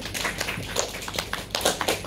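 A small audience clapping by hand, the claps growing louder near the end.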